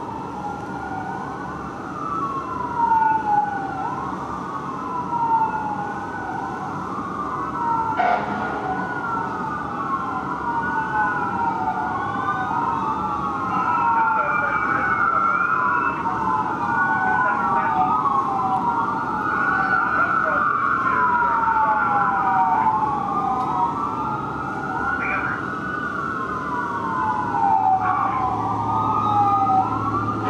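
Electronic wail sirens of a fire engine and a ladder truck running together, several rising and falling sweeps overlapping out of step. They grow louder after about a dozen seconds as the apparatus pass below.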